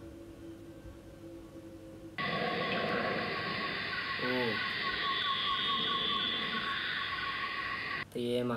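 Insects chirping steadily in night-time outdoor ambience, cutting in abruptly about two seconds in after a faint steady hum. A brief voice sounds once around the middle.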